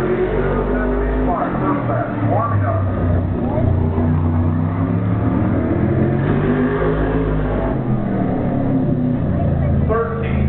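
A 410 super modified race car's 410-cubic-inch V8 running at racing speed around a short oval, its engine note rising and falling several times as it accelerates and backs off.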